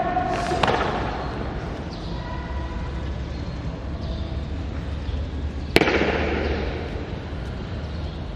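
Two sharp impacts echoing through a large hard-floored hall: a softer knock about half a second in and a louder, crisper crack near six seconds, each ringing on for a second or more. A low steady hum runs underneath.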